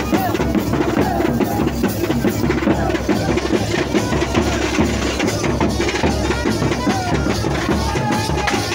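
A dhol, a two-headed barrel drum, beaten in a loud, driving rhythm together with clashing metal hand cymbals. Crowd voices shout over it.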